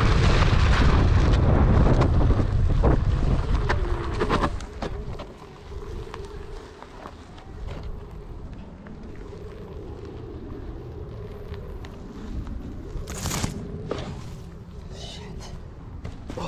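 Hub motor of a DIY one-wheel electric board (SuperFlux motor) straining up a very steep dirt slope at high current, with the knobby tyre crunching over dry grass and gravel. Loud rumble for the first few seconds, then a quieter faint steady whine as the board slows nearly to a stall, and one sharp loud sound about 13 seconds in.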